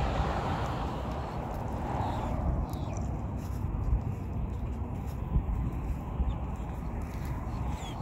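Steady low rumble of background road traffic, with a few faint knocks.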